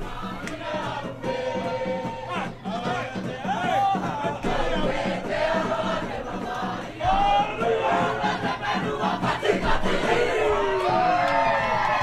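A crowd of many voices singing along together over a steady, repeating drum beat.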